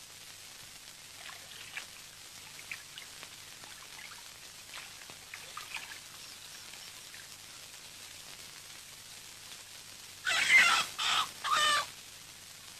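Faint splashing and dripping of water in an enamel washbasin as hands scoop water to the face. Near the end, a loud animal call comes in three short bursts.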